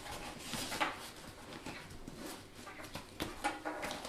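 Faint rustling and light knocks of a travel tripod being pushed into a nylon camera backpack's side tripod holder and the bag being handled, with a few sharper clicks, one about a second in and a pair a little past three seconds.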